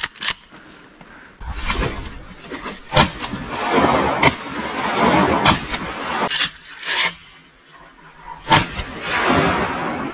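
Dry cattails and reeds rustling and scraping as someone moves through them, with scattered sharp clicks.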